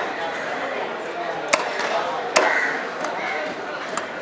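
Heavy steel cleaver chopping a barracuda into steaks on a wooden log chopping block: sharp chops about a second and a half in and again just under a second later.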